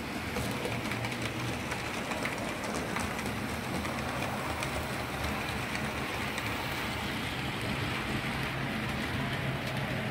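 Model railway trains running on the layout: a steady rumble and low hum from the locomotive motor and wheels on the track, with faint clicks scattered through it.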